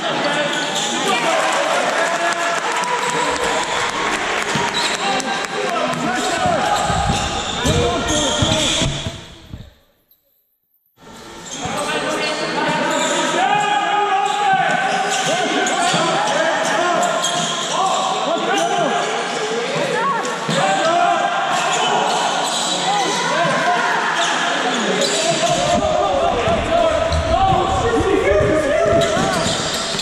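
Basketball game sound in a large, echoing gym: a ball bouncing on the court amid players' indistinct calls. The sound cuts out completely for about a second, about ten seconds in.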